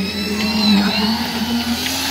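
Construction machinery engine running steadily, a continuous hum with a thin high whine over it.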